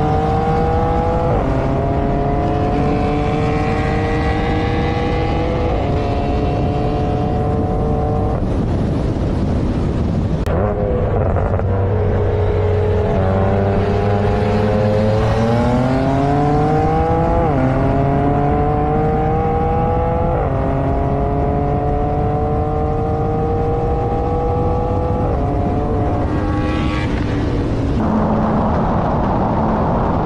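BMW M3's twin-turbo straight-six at full throttle through the gears, heard from inside the cabin: its pitch climbs steadily in each gear and drops at each upshift, over two separate pulls with several shifts each.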